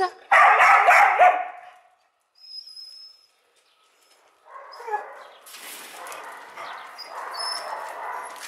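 A dog barking several times in quick succession in the first second and a half. After a silent gap, a quieter crunching of feet on loose gravel.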